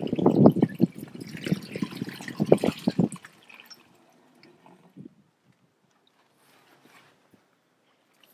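Water glugging out of a large plastic water-cooler jug as it is tipped and poured, a quick run of gurgles that stops about three seconds in.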